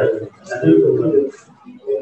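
Indistinct talking: a voice speaking in short phrases whose words are not made out.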